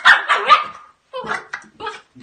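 A puppy barking at close range, about four loud barks in quick succession.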